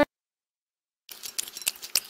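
Dead silence for about a second, then a quick, irregular run of short sharp clicks.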